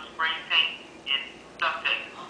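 A woman's voice talking in short phrases through a phone speaker.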